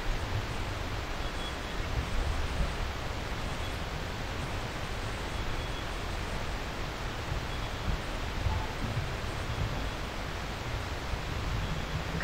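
Steady hiss and low rumble of a large terminal hall's ventilation, with a faint short high beep recurring about every two seconds.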